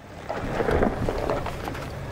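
Heavy pickup's off-road tires crunching slowly over loose gravel and rock, with a low rumble.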